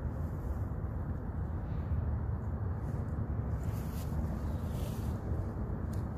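Steady low outdoor background rumble with no distinct sounds in it.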